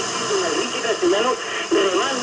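Spanish talk radio from Radio Marca on 89.1 FM, received by sporadic-E skip and played through a compact stereo's speaker: voices talking under a steady hiss of static from the weak, distant signal.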